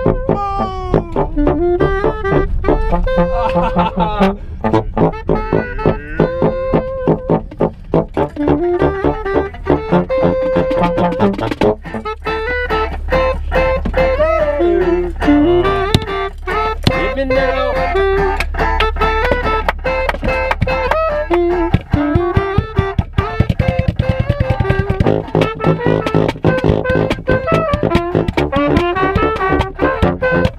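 Brass band playing an upbeat tune inside a car's cabin, the trombone and other brass carrying the melody over a steady beat.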